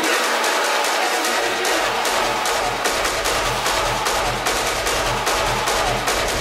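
Hard techno DJ mix with steady hi-hats and high percussion. The bass and kick drum drop out for about the first second, then fade back in with a regular pounding kick.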